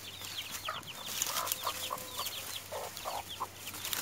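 A brood of chicks peeping in many short, high, falling notes, with a mother hen's soft, lower clucks now and then.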